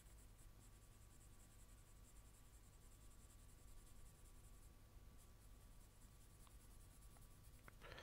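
Faint scratching of a 4B graphite pencil shading on paper in short, irregular strokes.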